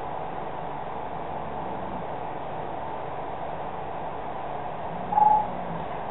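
Steady background hiss with no speech, and a brief hum about five seconds in.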